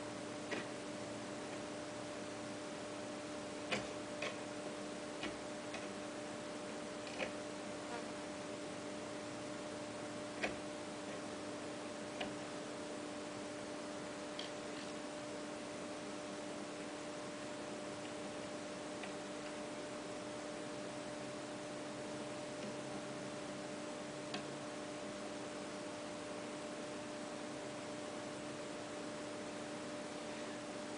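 Faint, scattered clicks and taps of hand work on an upturned wheelbarrow's frame, about a dozen light ticks, most of them in the first half, then only one more. Under them runs a steady hiss and a low, even hum.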